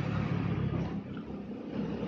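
Steady low rumble of background noise.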